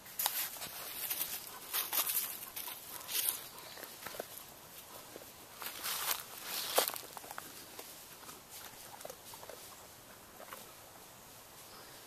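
Footsteps crunching and rustling on dry leaf litter, irregular steps for about the first seven seconds, then fainter and sparser.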